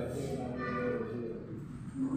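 A person's voice making drawn-out sounds without clear words.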